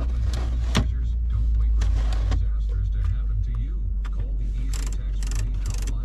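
A 2019 Mercedes GLS450's engine idling, heard from inside the cabin as a steady low rumble, with a few short clicks and rustles from the console controls.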